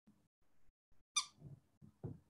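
A single brief, high-pitched squeak about a second in, followed by faint low sounds.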